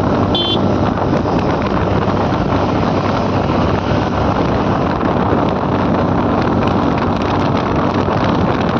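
Wind buffeting the microphone of a moving scooter, with engine and tyre noise running steadily underneath. A brief high beep sounds about half a second in.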